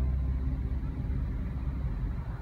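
Car cabin noise inside a Toyota Avanza: a low, uneven rumble of the engine and the surrounding traffic, heard once the stereo has stopped playing.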